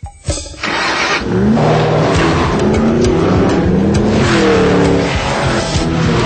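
A couple of sharp thumps, then a Ford Mustang engine revving hard from about a second in. Its pitch rises, falls and rises again, with music underneath.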